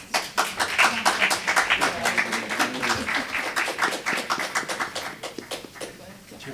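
Audience applauding, a dense patter of hand claps that starts suddenly and thins out near the end.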